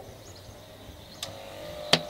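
Electric hair clippers switched on with a click about a second in, then running with a steady hum. A sharp click comes just before the end.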